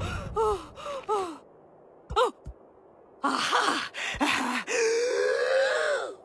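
Cartoon baby elephant's wordless voice straining while stuck between two rocks: a few short grunts, a near-quiet pause with one brief squeak, then a run of effortful whimpers that ends in a long wavering moan.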